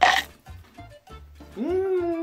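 A man's long closed-mouth "mmm" of delight while chewing a mouthful of snack puffs, rising then falling in pitch, starting about one and a half seconds in. Background music runs underneath, and there is a short sharp sound at the very start.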